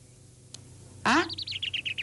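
A bird calling about a second in: a short rising note, then a quick run of high chirps that falls gently in pitch.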